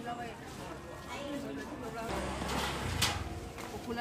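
Market stall ambience: women's voices talking, then a low rumble with a short, sharp hiss about three seconds in.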